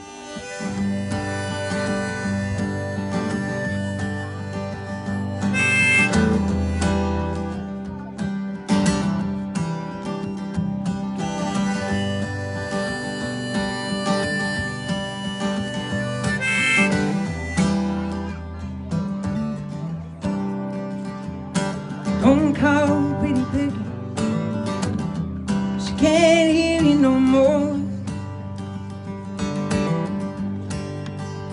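Harmonica in a neck rack and strummed acoustic guitar playing together, the harmonica holding long notes over a steady strum.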